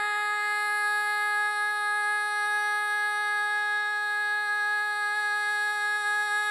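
A woman's solo singing voice, without accompaniment, holding one long, steady note.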